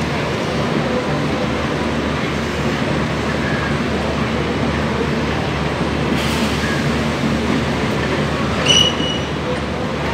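Express train's passenger coaches rolling past on the track, with a steady rumble of wheels on rail. A short, high-pitched squeal rings out near the end.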